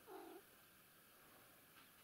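A domestic cat gives one brief meow right at the start.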